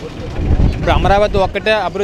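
A man speaking in an interview, with low road-traffic rumble behind his voice, most noticeable in the first half second before he speaks again.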